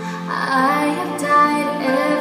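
A recorded song with singing. A held chord gives way to a new sung phrase about a third of a second in.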